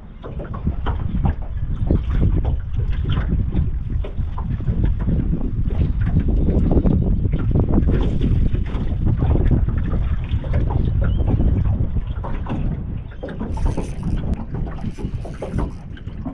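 Gusty wind buffeting the microphone in a loud, low rumble that rises and falls, over choppy water around a small open aluminium boat.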